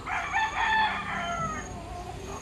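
A rooster crowing once: one long call that falls in pitch near its end.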